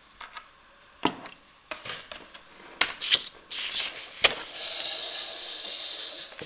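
Small metal jewelry parts being handled on a tabletop: several short sharp clicks and taps, with stretches of rustling in the second half, the longest near the end.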